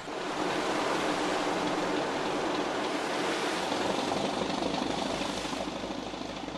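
Steady rush of sea waves and water, with no distinct individual strikes.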